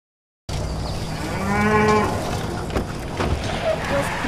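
A cow mooing once, about a second and a half in, over a steady low rumble of outdoor ambience that starts suddenly just after the opening.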